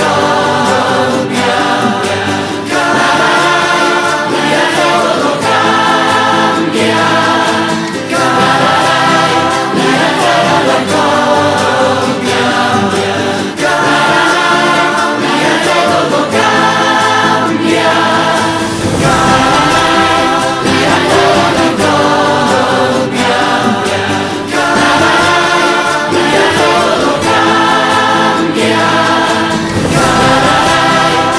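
A choir singing with musical accompaniment, in repeated phrases a second or two long.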